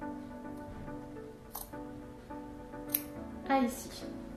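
Background music, over which small sewing scissors snip into fabric about three times, the last and loudest near the end: cutting the Y-shaped corners at the ends of a welt pocket opening.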